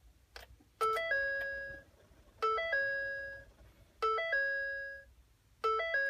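An electronic two-note chime sounds four times, about every second and a half, each a short lower note stepping up to a held higher note that fades. It comes as the engine computer's tune flash finishes.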